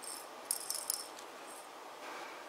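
Small plastic sequins rattling lightly inside a clear plastic tube as it is shaken and tipped to pour a few out into a palm, mostly in the first second.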